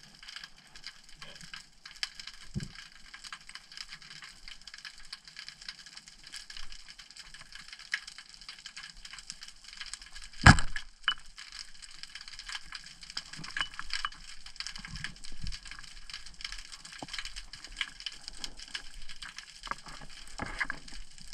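Underwater sound: a steady fine crackling and clicking throughout, and about ten and a half seconds in a single loud snap as a short band-powered speargun is fired at close range.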